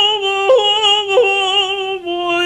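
A male cantor's tenor voice singing cantorial chant (hazzanut), holding long, high notes with vibrato and stepping to a new pitch twice.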